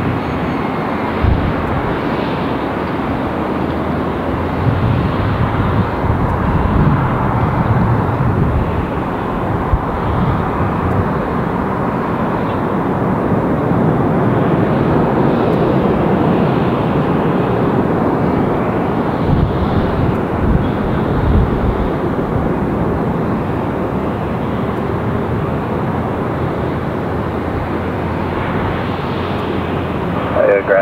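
Twin-engine jet airliner's engines running as it rolls away down the runway, a steady jet noise that holds at much the same level throughout.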